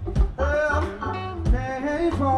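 Live funk band playing: trumpet and saxophone carry a melody line over electric bass, guitars and organ, with drum hits about two-thirds of a second apart.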